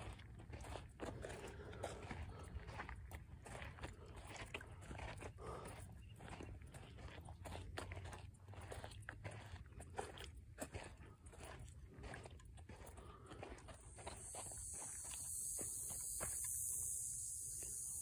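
Footsteps crunching on a dry dirt trail, then, about fourteen seconds in, a rattlesnake rattling close by: a steady high buzz that swells and holds.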